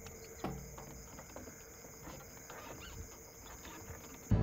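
Steady chirring of night crickets, with faint irregular knocks of a carriage horse's hooves on the road.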